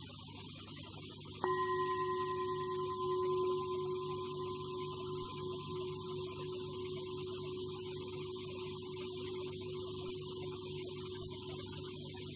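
Metal singing bowl struck once with a striker about a second and a half in, then ringing on with a low tone and a clear higher tone that slowly fade. Its highest overtone dies away within a second or two. The bowl marks the close of a guided meditation.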